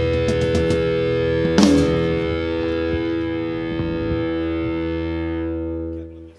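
Distorted electric guitar chord ringing out and slowly fading at the close of a blues-rock song, with one sharp hit about a second and a half in.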